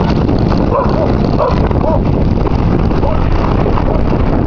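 Wind buffeting the microphone: a loud, steady rumble, with a few faint snatches of voice about a second in and again near the end.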